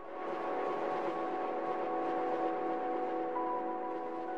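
Outro music: a sustained synth chord that swells in and is held steady, with a higher note joining near the end.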